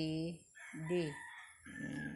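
A rooster crowing in the background, one drawn-out call through the second half, behind a woman's voice saying the letters 'c' and 'd'.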